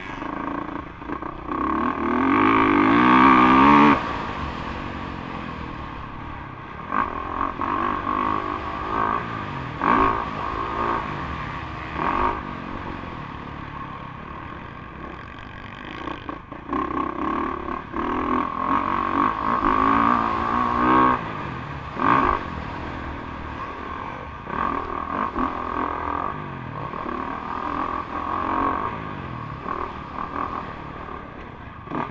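Dirt bike engine revving hard and backing off over and over, pitch rising under throttle and dropping as the throttle is rolled off, heard from a camera mounted on the bike. The loudest run of throttle comes a couple of seconds in.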